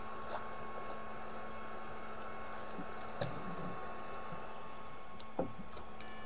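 A steady hum with a faint, constant higher whine. There are a few soft knocks and water sounds: one small click just after the start, a short cluster about three seconds in, and one sharper knock near the end.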